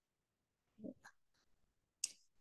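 Near silence, broken a little before the middle by one brief faint sound and a soft click just after it.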